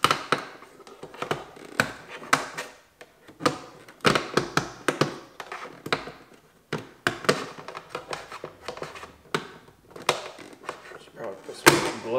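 Factory side-mirror glass of a 10th-generation Honda Civic Type R being pried out of its housing with a plastic trim tool: a run of irregular sharp plastic clicks and knocks as its clips let go.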